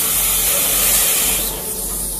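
Red-hot knife blade sizzling as it presses into a gummy candy and melts it. The hiss dies down near the end.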